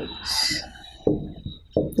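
A marker stroke squeaking on a whiteboard early on, followed by two brief low hums about a second and a second and a half in.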